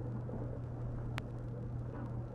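A steady low hum, with one faint click about a second in.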